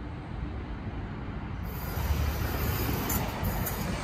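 DSB class EB electric locomotive (Siemens Vectron) approaching on the rails, a low rumble that grows louder about two seconds in.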